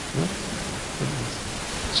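Steady hiss of room noise in a pause between a lecturer's sentences, with a couple of faint, brief voice sounds.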